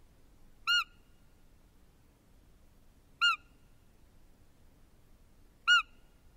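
Three short, high, squeaky roe deer fiep calls, about two and a half seconds apart, of the kind used to draw in a roe buck.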